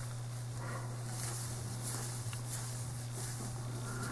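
Quiet room tone with a steady low hum and no distinct sounds from the hook or yarn.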